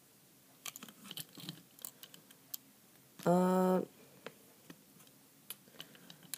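Scattered light clicks and taps from a plastic toy train engine being handled and turned in the hand. About halfway through, a short held "uh" from a voice.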